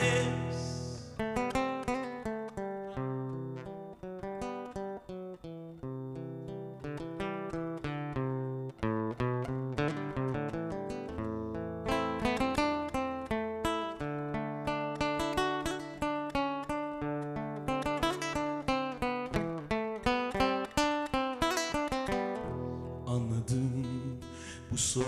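Acoustic guitar played live in a quick, continuous run of picked notes, with low held bass notes underneath. It is an instrumental passage of the song, and a sung note fades out in the first second.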